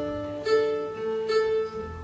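Acoustic guitar being tuned: single strings plucked about once a second and left ringing, the same note struck again as the tuning peg is turned.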